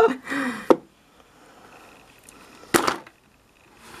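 Makeup products being handled and packed back into a wooden drawer, with a brief bit of voice at the start and a single sharp knock about three seconds in.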